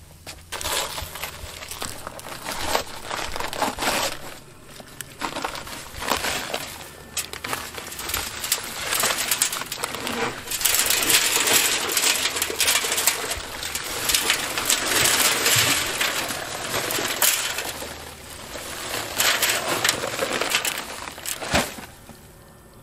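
Dry concrete mix poured from a paper sack into a steel drum with water in it: a continuous grainy hiss and crackle of sand and gravel pouring in, with the sack's paper rustling. It is loudest through the middle and again shortly before the end.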